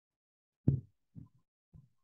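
Three short, dull, low thumps about half a second apart, the first the loudest.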